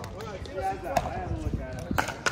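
Pickleball being hit with paddles and bouncing on the court: a few sharp knocks about half a second apart, over background voices.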